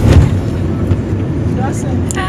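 Steady low road and engine rumble inside a moving car's cabin, with a couple of brief bumps right at the start.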